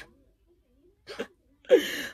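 A woman's short, sharp vocal burst with a falling pitch near the end, the loudest sound, preceded by about a second of near quiet and a faint brief vocal sound.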